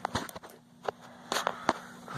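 Camera handling noise: about five or six scattered short clicks and soft knocks as the phone is moved around, over a faint steady hum.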